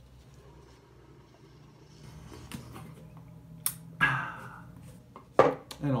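A man sipping hot coffee from a paper cup: a faint slurp, a sharp click, then a breathy exhale that fades over about a second. Near the end there is a single sharp knock as the cup is set down on the wooden table.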